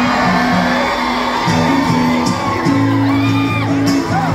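A live band playing a country song on acoustic guitars, upright bass and accordion, with steady bass notes moving step by step, and whoops from the crowd over the music.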